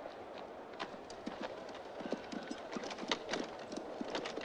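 Horses' hooves clip-clopping in many irregular strikes, growing denser from about a second in, over a steady background noise.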